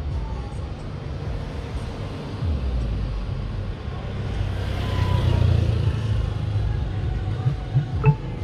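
City street traffic: a steady low rumble, with a vehicle passing close that swells to a peak about halfway through. A couple of sharp knocks come near the end.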